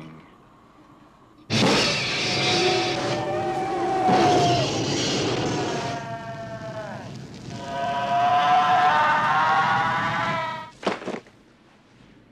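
Horror-film sound effects: a flamethrower's roar starts suddenly about a second and a half in, with a creature's high wavering shrieks gliding over it. It comes in two long surges with a dip between them and cuts off shortly before the end.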